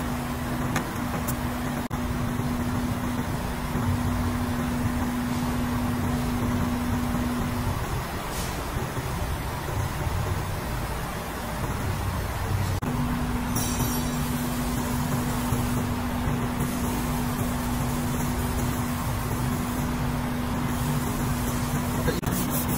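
Steady mechanical noise with a low, even hum that stops for about five seconds midway and then comes back.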